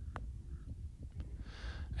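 A single short click of a putter striking a golf ball, a fraction of a second in, over faint background noise.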